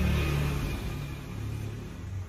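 A low, steady rumble that fades gradually over the two seconds.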